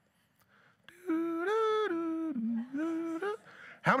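A man humming a short tune of a few held notes, starting about a second in and lasting about two seconds, with one dip to a lower note partway through.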